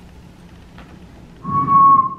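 A person whistling one steady, high note while humming low underneath it, starting about one and a half seconds in and lasting under a second.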